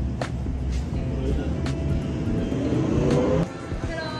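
City street traffic noise: a steady low rumble, with a vehicle engine rising in pitch near the end before the sound cuts off suddenly.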